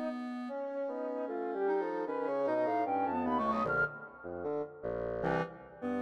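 Contemporary chamber music for a wind trio of flute, clarinet and bassoon. One line climbs in a run of notes while the low part falls, then short detached chords are separated by brief gaps.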